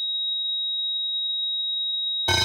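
A single steady high-pitched electronic tone, like a pure test tone, held unbroken with nothing else underneath, as a sound effect in the intro of a hard trance track.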